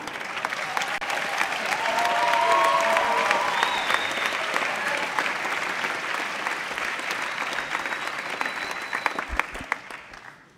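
Audience applauding, the clapping swelling over the first few seconds and tapering off near the end, with a brief voice heard over it about two seconds in.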